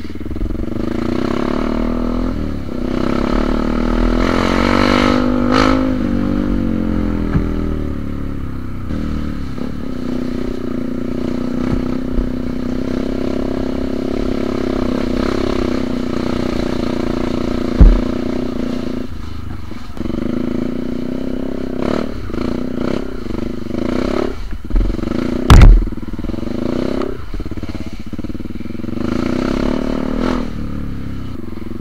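Yamaha WR155R single-cylinder trail motorcycle engine running as it is ridden along a dirt track, revving up a few seconds in and then holding a steady pace. Two heavy thumps break in, one just before the midpoint of the latter half and a louder one near the end.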